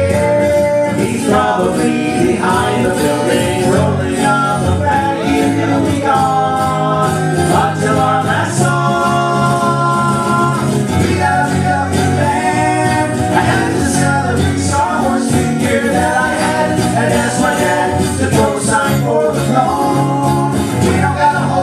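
A live song: acoustic guitar strummed under male voices singing, with several long held notes.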